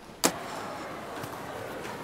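A single sharp click about a quarter second in, followed by a steady hiss of background ambience.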